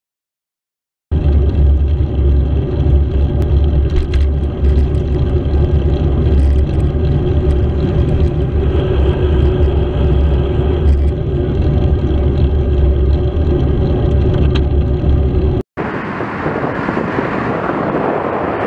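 Bicycle-mounted camera riding along a road: loud, steady wind and road rumble that starts about a second in and cuts off suddenly about fifteen and a half seconds in. After the cut, softer wind noise on the microphone as a car passes close alongside the bike.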